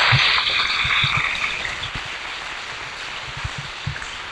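Audience applauding, the clapping thinning and fading away, with a few scattered low thumps.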